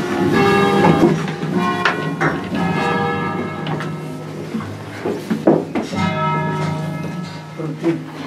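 Church tower bells rung by rope, several bells striking one after another, their tones ringing on and overlapping.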